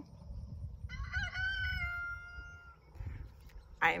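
A rooster crowing: one long crow starting about a second in and lasting nearly two seconds.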